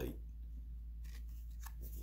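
Faint rustling and scraping of a 1969 Topps baseball card being picked up and turned over on a cloth, over a steady low hum.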